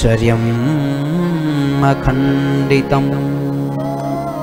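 Devotional chanting: a male voice singing long held notes that bend gently in pitch, over a steady drone.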